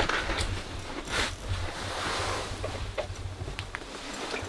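Wind noise on the microphone, a steady low rumble, with a few short rustling swishes.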